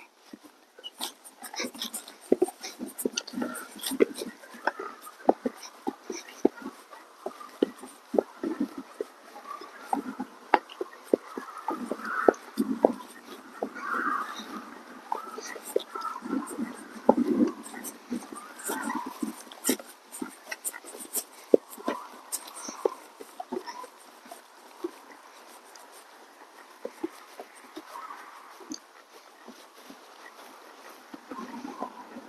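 A ridden draft-cross horse walking on packed dirt: irregular soft hoof falls and small clicks and knocks of the bit and saddle tack.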